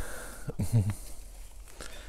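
A man's voice giving one short, falling sound about half a second in. The rest is a quiet background with a couple of faint clicks near the end.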